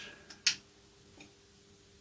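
Long-nosed utility lighter being clicked to light a candle: one sharp click about half a second in, then a faint second click about a second later.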